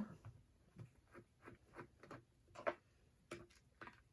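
A run of faint, short, irregular clicks and taps, about a dozen, from small plastic lab ware: a squeeze bottle and dropper handled while Photo-Flo solution is measured into a plastic cup.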